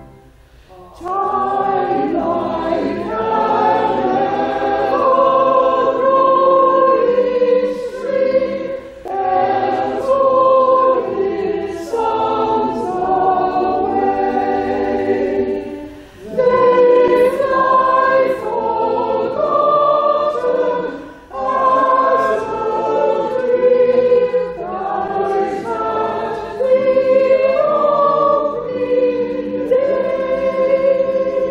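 Small church choir singing in phrases, with short breaks between them; the singing begins about a second in.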